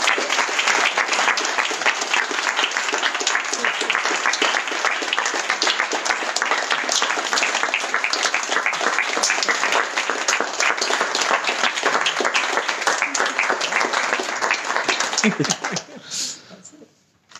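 A small audience applauding steadily, then dying away just before the end.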